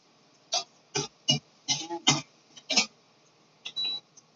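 A metal spoon tapping and scraping against the edge of a plate in a string of short, uneven knocks as chopped ginger is pushed off into a cooking pot.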